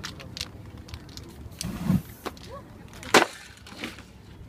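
Knocks, clicks and scrapes of a street spray-paint artist handling his cans and painting board, with a short hiss near the middle. A single sharp knock about three seconds in is the loudest sound.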